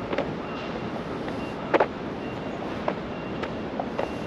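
Steady outdoor hiss of wind and distant city traffic, with a few sharp taps roughly a second apart: footsteps on stone paving.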